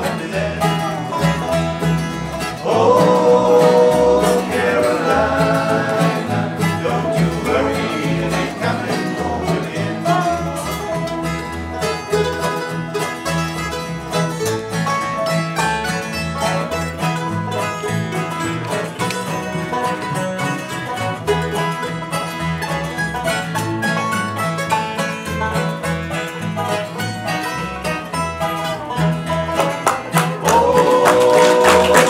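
Live acoustic bluegrass band playing: banjo, mandolin, acoustic guitar and dobro over a steady upright bass line.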